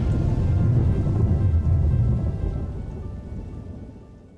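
Thunder sound effect rolling and rumbling with rain under a music bed, fading away over the last second and a half.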